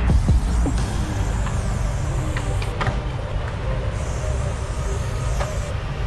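Aerosol spray paint can hissing as a yellow outline is sprayed, easing off for a moment about four seconds in, over a steady low rumble.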